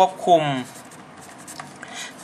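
A Staedtler pen writing Thai characters on paper: faint, irregular scratching of the tip across the page, following a brief spoken word.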